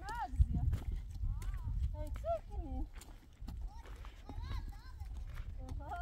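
Footsteps crunching and clacking on loose stony ground as several people walk downhill, with voices calling out in short, drawn-out notes that rise and fall in pitch. A low rumble of wind on the microphone runs underneath, with one loud thump about half a second in.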